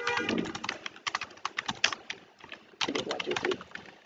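Computer keyboard typing: a quick, uneven run of key clicks. Brief faint voice-like sounds come in just after the start and again about three seconds in.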